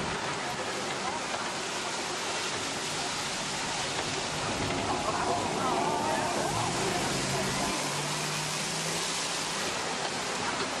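Steady rushing of a waterfall close by, with faint voices partway through.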